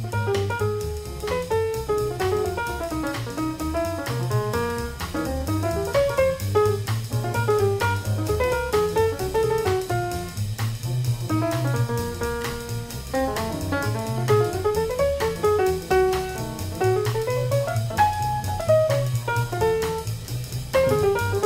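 Up-tempo jazz quintet: a saxophone solos in fast running lines that climb and fall, over walking double bass, piano and a drum kit keeping time on the ride cymbal.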